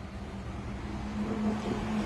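Steady low hum of a running motor with a droning tone, slowly growing louder.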